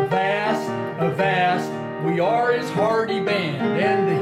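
A man singing the chorus of a pirate song, his voice gliding between notes over steady instrumental notes held underneath.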